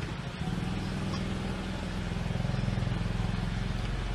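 Low, steady engine rumble of a motorcycle idling, heard through the playback of street CCTV footage. It swells about half a second in, just after a short click at the start.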